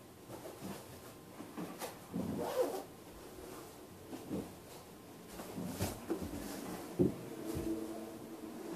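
Handling noise of someone moving about and getting into winter clothing: rustling fabric and a jacket zipper, with several scattered knocks and clicks.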